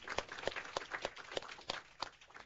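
Applause from a small group clapping their hands, with separate claps heard one after another.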